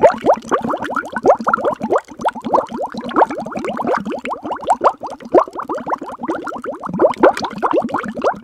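Bubbling liquid sound effect: a dense, steady run of quick rising bubble blips.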